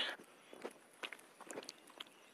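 Footsteps of a person walking on a paved road, a short soft step roughly every half second.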